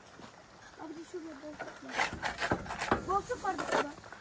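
A shovel scraping and knocking as wet cement mortar is scooped from a wooden farm trailer: a quick run of sharp scrapes and knocks about halfway through, with voices around it.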